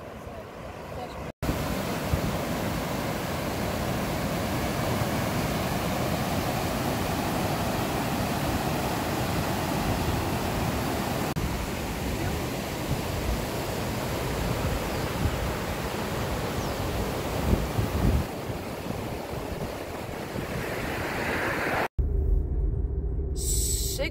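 Steady rushing of a rain-swollen river's rapids, a loud even roar of water with no distinct strokes. Near the end it cuts to a low steady car-cabin rumble.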